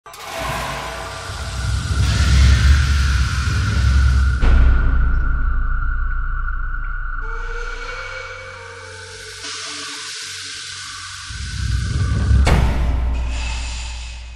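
Cinematic intro music for a production logo: a deep rumble under whooshing swells and one held high tone. A sudden swell hits about four seconds in and again near the end, then the sound fades out.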